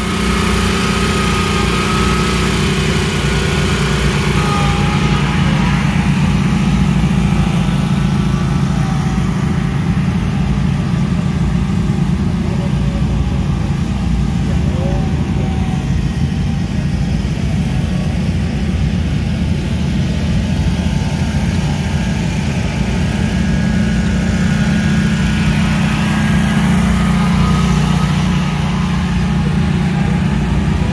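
Engines of commercial stand-on zero-turn lawn mowers running steadily at working speed, a constant low drone that swells slightly now and then as the machines move around.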